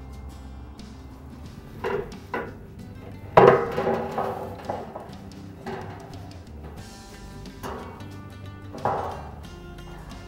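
Drop tubes being pulled off a grain drill's row units and dropped into a sheet-metal catch pan: about half a dozen knocks and clanks with a short metallic ring, the loudest a few seconds in, over background music.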